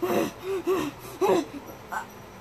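A high-pitched voice laughing under its breath in about six short, breathy bursts, stifled giggling.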